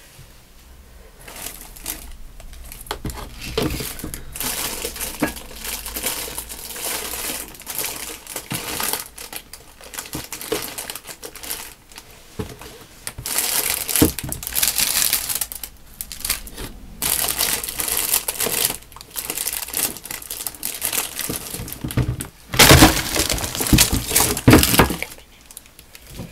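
Plastic wrapping crinkling and rustling in repeated irregular bursts as craft supplies are rummaged through and handled, loudest near the end.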